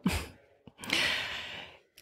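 A person's audible breath in, close to the microphone, lasting about a second and fading out just before speech resumes. A faint mouth click comes just before it.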